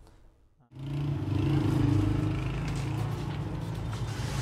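Near silence for under a second, then a sudden steady low mechanical hum with a wash of background noise that runs on evenly.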